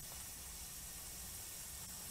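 Faint, steady background hiss of outdoor ambience with no distinct event.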